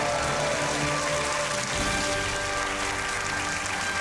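Studio audience applauding over a short music sting that shifts to new held notes about two seconds in.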